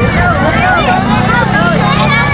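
Several voices calling out over the steady low running of a truck engine.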